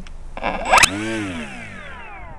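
Small electric motor throttled up in a quick rising whine, cut off with a sharp click, then winding down in a long falling whine as it coasts to a stop. It is a brief test spin to check its direction of rotation, which turns out to be the right way.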